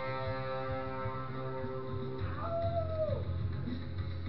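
Guitar played by hand, a chord ringing on. About two and a half seconds in, a cat meows once, a short call that falls in pitch at its end.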